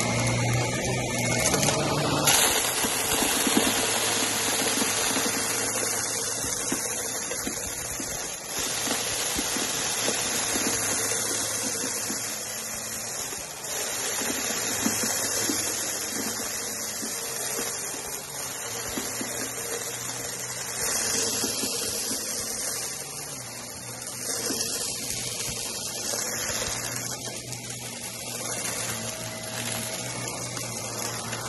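Upright vacuum cleaner running on a shag rug, sucking up loose blue granules that crackle and rattle as they are drawn in. The rush of air rises sharply about two seconds in and then holds steady.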